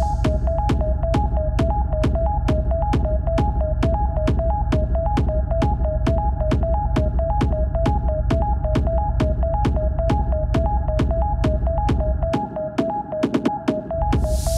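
Hard techno in a stripped-down section: a steady kick drum about two and a half beats a second over a rumbling bass, with a two-note synth pulse alternating above it and no hi-hats. The deep bass drops out about two seconds before the end.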